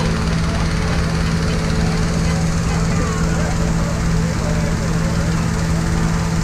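Small gas engine of a balloon inflator fan running at a steady pitch, blowing cold air into a balloon envelope on the ground, with crowd chatter around it.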